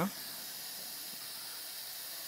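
Steady hiss of background noise, even and unchanging, with no other event.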